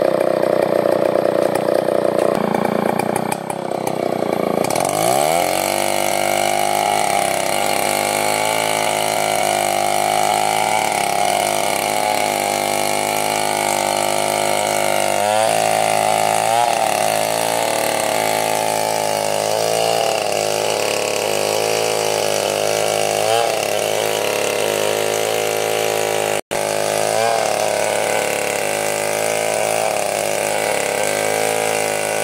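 Chainsaw ripping a large bayur log lengthwise. About four seconds in, the engine speed drops and climbs back, then holds steady in the cut with a few brief wobbles. The sound cuts out for a moment near the end.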